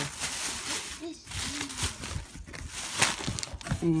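Thin plastic shopping bags crinkling and rustling as a hand rummages through them, with irregular crackles.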